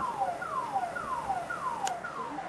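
An alarm sounding a repeated falling tone, a little over two glides a second, over a steady noisy background, with a single sharp click near the end.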